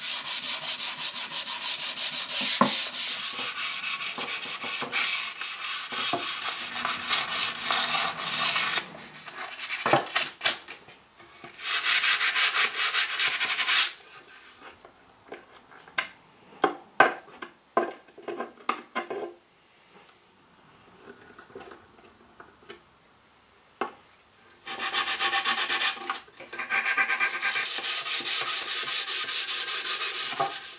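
Mahogany being sanded by hand with 220-grit sandpaper: quick back-and-forth rasping strokes, in three stretches. In the middle come a scatter of light knocks and clicks, then a few near-quiet seconds.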